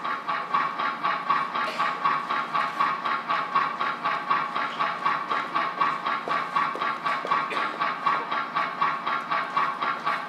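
A steady rhythmic pulsing, about three to four beats a second, over a steady ringing tone, like a train's clickety-clack.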